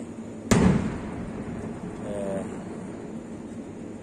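A single sharp knock about half a second in, the loudest sound here, with a short ringing tail, over a steady low hum.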